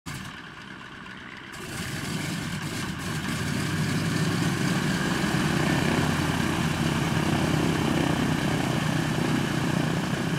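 Douglas C-47's twin Pratt & Whitney R-1830 radial engines running as the plane taxis, their propellers turning. The sound grows louder over the first three seconds, then holds steady.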